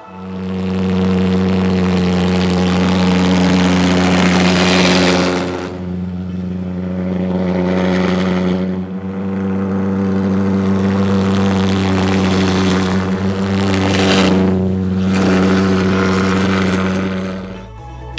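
Jet go-kart's pulsejet engine running with a steady low drone under a loud rushing noise. The noise eases about six seconds in, swells again about fourteen seconds in, and the engine sound falls away just before the end.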